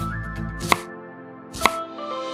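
Two sharp chops of a miniature knife through onion onto a small wooden cutting board, about a second apart, over background music.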